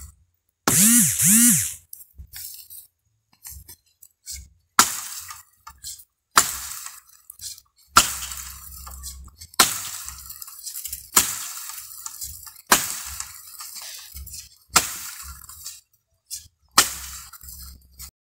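Axe chopping into a felled tree trunk, with eight hard strikes about every one and a half to two seconds from about five seconds in; the axe head is working loose on its handle. A brief two-part voice call sounds about a second in.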